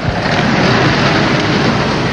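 A taxicab driving past close by: a steady rush of engine and road noise that swells up at the start.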